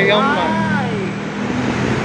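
A man's voice counting in Japanese for about the first second, over a steady hum of city road traffic from cars and motorbikes.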